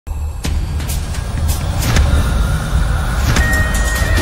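Dramatic background score: a deep, steady rumbling drone with several sudden hits, and a single high held tone coming in near the end.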